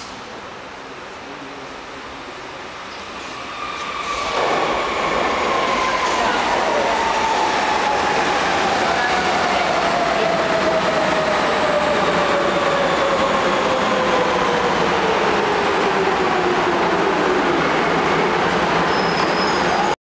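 Berlin U-Bahn train arriving at a station. After a few seconds of quiet platform sound it comes in about four seconds into the clip, loud with the noise of wheels on the track, and a whine falls steadily in pitch as the train slows to a stop.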